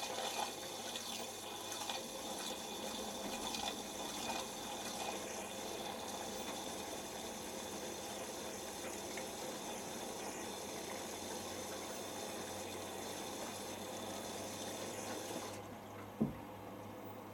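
Miele Professional PW6055 washing machine filling with water during its prewash: water rushes in steadily from the moment the inlet valve opens and cuts off suddenly about fifteen seconds later, while the drum tumbles the load.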